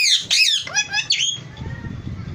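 Indian ringneck parakeet squawking: about four sharp, harsh calls in quick succession that stop about one and a half seconds in.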